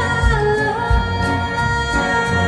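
Live band music through a PA: a kick drum keeps a steady beat under a melody line sung in held notes that slide from one to the next.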